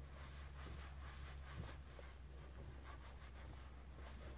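Faint, soft rustling of a terry towel being rubbed over shampoo-soaped hair, with a few small ticks over a low steady hum.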